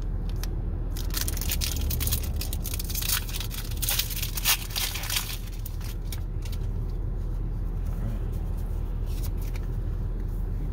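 A foil Pokémon booster pack being torn open and its wrapper crinkled: a dense run of crackles for the first five seconds or so, then quieter handling of the cards. A steady low hum of the car cabin runs underneath.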